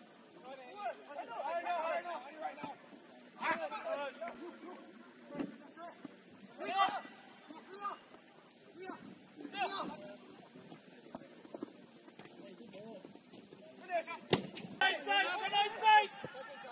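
Players shouting across a football pitch, with a few sharp thuds of a ball being kicked, the loudest about two seconds before the end.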